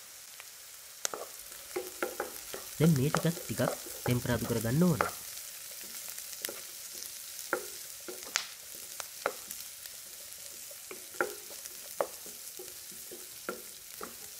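Onions, green chillies, curry leaves and pandan leaves frying in oil in a non-stick wok, sizzling steadily while a wooden spatula stirs them with frequent light scrapes and taps. A voice is heard briefly a few seconds in.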